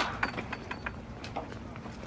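A gate latch clicking sharply as a wooden gate is pushed open, followed by several lighter clicks and taps.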